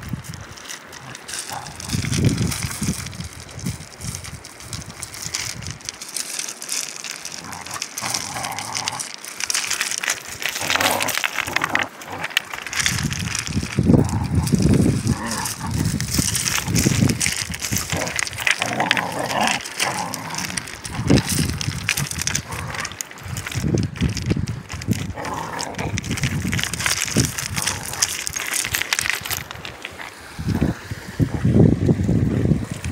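Two border collie puppies growling in bursts as they play-fight, with loose creek stones clattering under their paws over the steady rush of a shallow stream.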